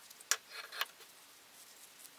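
Small scissors snipping through a thin square of toilet paper: two short, sharp snips about half a second apart in the first second.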